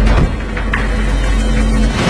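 A car engine running steadily while driving, heard as a low rumble with a film music score faint beneath it.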